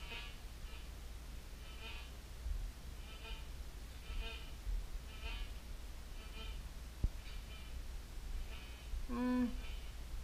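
White's MX Sport metal detector giving short, high chirps about once a second as its coil is swept over a concrete floor, with a single click about seven seconds in and a louder, lower tone near the end.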